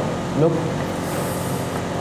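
A man's voice saying a single word, over a steady background hum that runs without a break.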